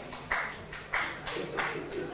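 A run of sharp, evenly spaced percussive strokes, about three a second.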